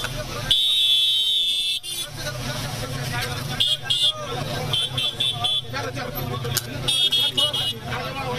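Shrill vehicle horn toots over the chatter of a crowd: one long blast near the start, then several quick runs of short toots.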